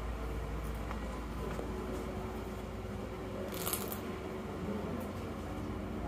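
Steady low rumble with a faint hum, and a brief rustle a little past halfway.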